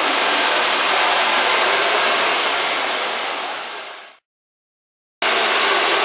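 Handheld hair dryer blowing steadily as it dries hair. About four seconds in the sound fades away to silence, and a second later it starts again suddenly at full strength.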